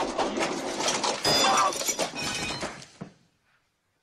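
Film sound effect of a heavy clothes iron clattering down a shaft and crashing into a man, a dense metallic clatter for about three seconds, loudest near the middle, that stops abruptly.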